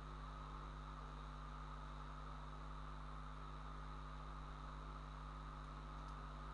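Steady low electrical hum with a faint even hiss, unchanging, with no other events.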